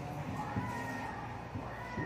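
A voice singing faintly in drawn-out, slightly gliding notes, as in a devotional song.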